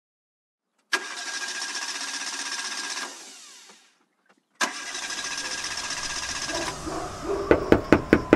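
A van's engine cranked twice without catching: a steady grinding run of about two seconds that winds down, then after a short pause a second, longer attempt with a low rumble beneath it, the sign of a broken-down vehicle that won't start. Near the end, sharp knocks on a door begin.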